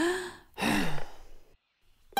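A cartoon woman's voice giving an exaggerated, huffy sigh: a short voiced breath at the start, then a long breathy sigh that falls in pitch, acting out a grumpy sulk.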